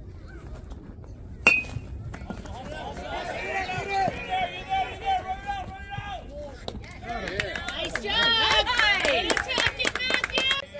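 A baseball bat strikes a pitched ball about a second and a half in: one sharp crack with a brief ringing ping, the loudest sound here. Spectators then shout and cheer, swelling louder near the end.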